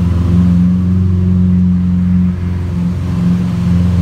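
Lamborghini Aventador's V12 engine idling with a steady low drone.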